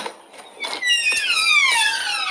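A high-pitched squeal that glides steadily down in pitch, starting about a second in and lasting about a second and a half.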